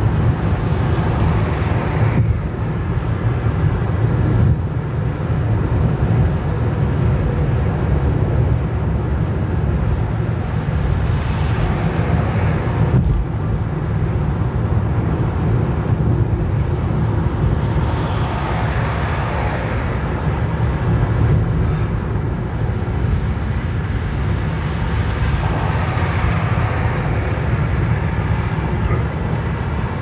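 Steady low road and engine rumble inside a car's cabin at motorway speed. The tyre and wind hiss swells up and fades several times as other traffic goes by.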